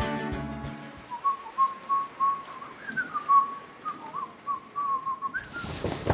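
The tail of a song fades out, then a person whistles a short tune of single held notes with small slides between them. Near the end, a hissy background comes in suddenly.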